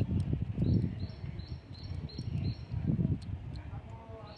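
A bird chirping repeatedly in the background, two to three short high chirps a second, over uneven low rumbling noise.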